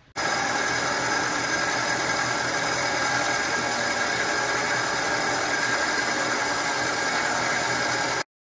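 Knee mill running, its cutter machining a cast intake manifold clamped in a fixture. A steady machine noise with a few held whining tones starts suddenly and does not change.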